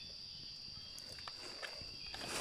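Night insects chirping, a steady high-pitched chorus, with a few faint clicks around the middle.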